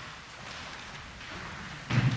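A congregation rising to its feet: a steady rustle of clothing and shuffling, with a louder bump near the end.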